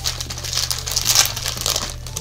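Plastic gummy-candy packaging crinkling and crackling irregularly as it is pulled and worked open by hand.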